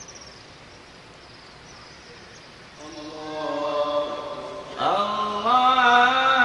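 An imam's voice chanting a long, drawn-out phrase of the prayer over a faint steady background hum. The chant starts about three seconds in with long held notes and grows louder with a rising swoop near the end.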